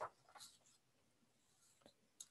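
Near silence: room tone with a couple of faint, light ticks.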